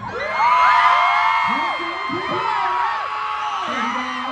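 Crowd of fans screaming and cheering, many high voices overlapping and gliding up and down, loudest about half a second in and easing a little after. A steady low tone comes in near the end.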